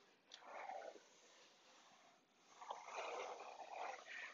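Faint rubbing of a fabric-covering iron gliding over aircraft fabric stretched on a plywood panel while the fabric is heat-shrunk: two soft swishes, one just under a second long near the start and a longer one from a little before the three-second mark.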